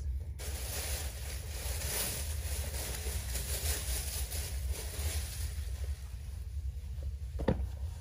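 Rustling of clothing being handled, strongest in the first few seconds and then fading, over a constant low rumble, with a single sharp tap about seven and a half seconds in.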